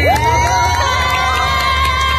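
Audience cheering: a long, high-pitched whooping scream that rises sharply at the start and then holds its pitch for about two seconds, over the steady bass of dance music.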